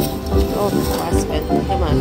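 Huff N' More Puff video slot machine playing its free-game bonus music and reel-spin sounds as the reels spin, with voices in the background.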